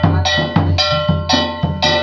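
Rhythmic percussion music: a metallic, ringing strike about twice a second over a low drum beat.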